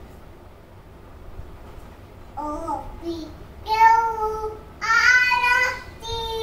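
A young child singing: after a quiet start, a short phrase comes a couple of seconds in, then two long held notes near the end.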